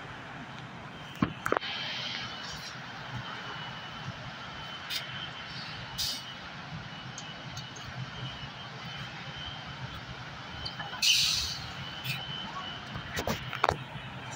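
Volvo three-axle double-decker bus pulling slowly away from its stand, its diesel engine running low and steady. A short burst of compressed-air hiss comes about eleven seconds in, with a few sharp clicks near the start and the end.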